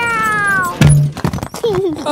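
Cartoon demolition: a long falling pitched swoop as the wrecking ball swings, then a sudden crash just under a second in and a clatter of soft toy blocks tumbling down, followed by a short voice-like squeal near the end.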